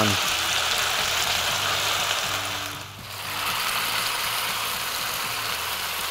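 Potato-pancake batter frying in hot fat, about 180 to 220 °C, in a stainless steel tray on a gas grill: a steady sizzle that briefly drops away about halfway through, over a low hum.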